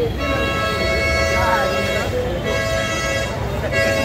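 Road vehicle's horn sounding in long held blasts, broken twice for a moment, over the chatter of a crowd.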